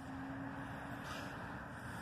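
Faint steady outdoor background rumble, with a thin steady hum that stops a little over a second in.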